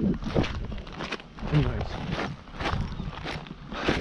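Footsteps on stony, gravelly ground: a series of short, irregular crunches.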